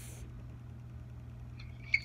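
Quiet room tone with a steady low hum. A brief hiss right at the start.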